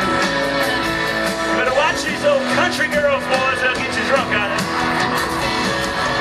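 Live country band playing loud amplified music, with guitars and a steady drumbeat, picked up by a small handheld camcorder microphone in the crowd. A lead line bends up and down in pitch in the middle.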